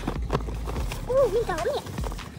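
Light taps and knocks of cardboard phone boxes being handled and shifted, with a short high-pitched vocal exclamation after about a second.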